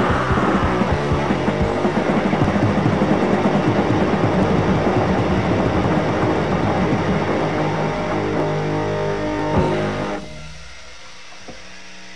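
Hardcore punk band playing with distorted guitar, bass and fast drums as the song ends. About ten seconds in the band stops, and a quieter steady ringing tone holds on to the end.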